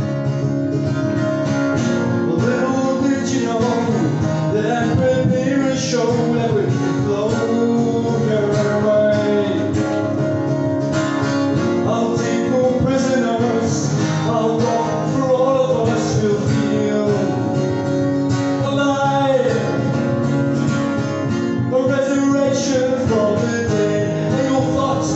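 Music: a steadily strummed acoustic guitar, with a melody line that bends and glides over it.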